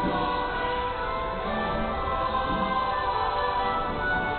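Religious choral music: a choir singing a hymn in long held notes.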